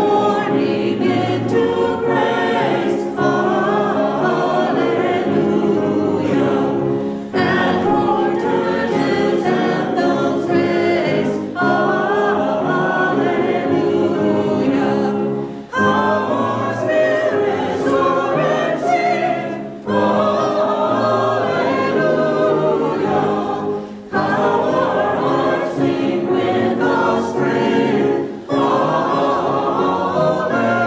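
Mixed choir of men's and women's voices singing together, in sustained phrases of about four seconds with short breaks for breath between them.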